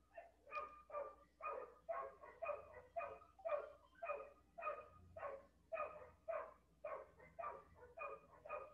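A dog barking over and over in the background, faint, about two or three short barks a second.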